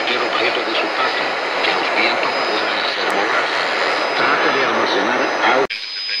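Shortwave radio receiver playing a weak broadcast: a steady wash of static and hiss with a faint voice under it. It drops out abruptly near the end.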